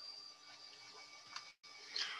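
Quiet room tone with a faint steady high whine, a single light click about one and a half seconds in, and the sound cutting out completely for an instant just after.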